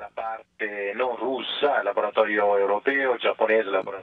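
Speech only: a voice talking over a thin, telephone-like audio link.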